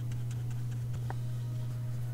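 A steady low hum with a few faint, light ticks over it, the clearest about a second in.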